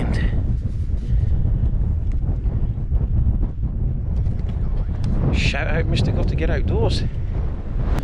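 Wind buffeting the microphone in a steady low rumble, with a few words of a voice about five to seven seconds in.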